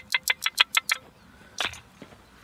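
A quick run of about eight short, sharp scrapes, about seven a second, then one more about a second and a half in: a hand scraping dirt from the blade of a steel folding shovel to free a dug-up cartridge case.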